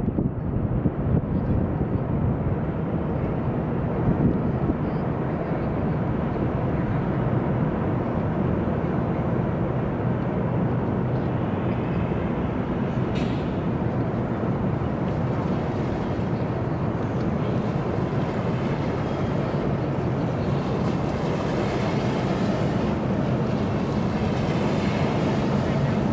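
Steady low rumble of distant traffic and boat engines, with wind on the microphone. In the last few seconds a boat wake washes onto the gravel shore, adding a hissing splash.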